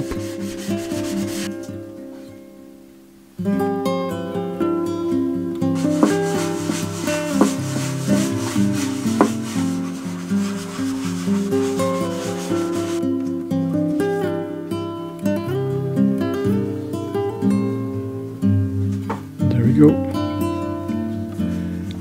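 A white scrubbing pad rubbing over the surface of a spalted silver birch platter, wiping off excess oil finish. Acoustic guitar background music starts abruptly a few seconds in and plays over the rubbing.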